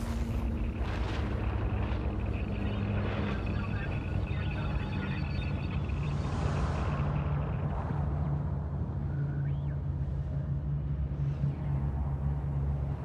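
A steady low rumble with a low hum, and a brief rising whistle about nine and a half seconds in.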